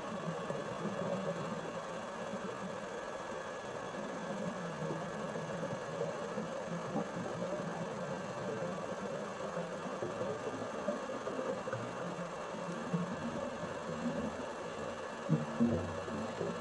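Steady mechanical hum and hiss, heard underwater through the camera, with a few short knocks near the end.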